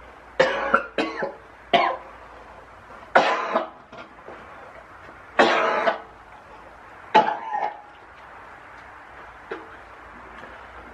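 A man retching and gagging as he makes himself vomit: about seven harsh heaves spread over the first eight seconds, the longest lasting about half a second.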